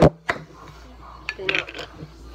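Kitchen dishes and utensils clattering: a sharp knock with a second click a third of a second later, then a short burst of rattling about one and a half seconds in.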